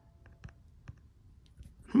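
A handful of faint, scattered taps and clicks from fingers handling and tapping a smartphone while trying to stop the recording, ending in a short spoken 'hmm'.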